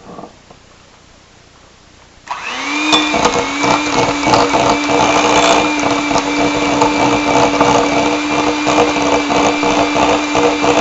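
Handheld electric mixer switched on about two seconds in, its motor whining up to a steady speed. Its beaters churn butter and maple syrup in a glass bowl with a continual rapid clatter.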